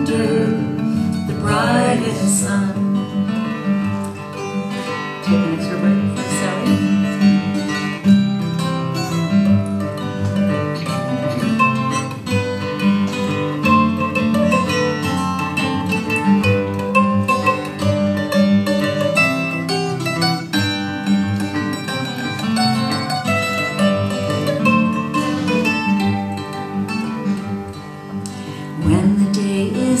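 Acoustic guitar and mandolin playing an instrumental break in an old-time folk tune, the guitar keeping rhythm under a picked melody. The last sung note trails off just at the start, and singing comes back at the very end.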